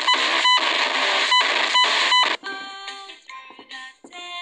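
A loud, harsh blast of distorted noise that stutters with brief gaps and short repeated beeps, cutting off suddenly about two and a half seconds in. The quieter children's song music then comes back.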